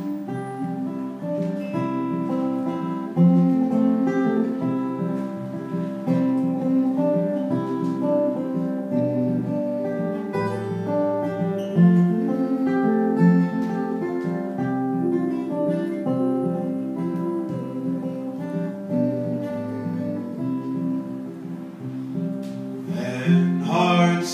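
Acoustic guitar playing an instrumental break in a song, a steady run of ringing notes and chords. A man's singing voice comes back in near the end.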